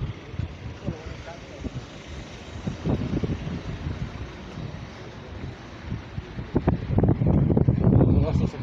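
Wind buffeting a handheld phone's microphone while the holder walks along a street, loudest in the last second or so, with voices and traffic in the background.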